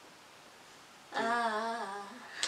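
A woman singing one held, slightly wavering note, starting about a second in after a moment of near silence.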